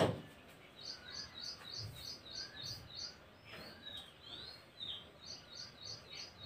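Faint bird chirping: a quick run of high, repeated chirps about three or four a second, a few slurred calls, then a second run near the end. A short click sounds at the very start.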